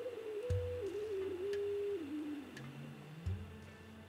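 Beat tone of a signal-generator carrier received in USB on a President Jackson CB radio, played through an external speaker. The single whistle-like tone falls in pitch in glides and small steps as the clarifier knob is turned. There are two low thumps, one about half a second in and one near the end, and a few faint ticks.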